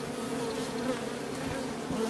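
Honeybee colony in an opened top bar hive, buzzing in a steady hum.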